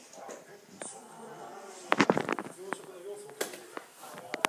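A dog moving about on a hard floor, with a cluster of sharp clicks and scuffs about halfway through and a faint whine after it.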